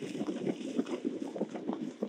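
A horse cantering through shallow water, its hooves splashing in quick, irregular strikes.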